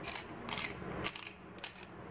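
A hand-twisted spice grinder grinding in short ratcheting bursts, about two twists a second.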